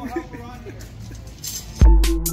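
A man's voice trails off over faint background hum, then near the end electronic background music comes in with a heavy, deep bass hit.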